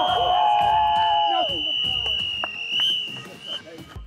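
Group of soccer players yelling and cheering as a penalty kick goes in, with one long yell in the first second and a half. A long shrill whistle is held over the shouts for about three and a half seconds.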